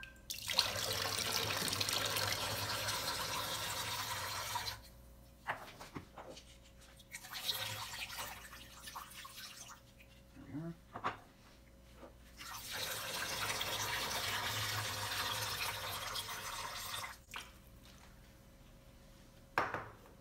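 Excess water being poured out of clay-pebble-filled glass orchid containers into a stainless steel sink, in two long pours of about four seconds each with a weaker one between. Short knocks come between the pours as the glass containers are handled and set down on the countertop.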